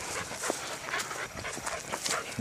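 A four-month-old black Labrador puppy panting.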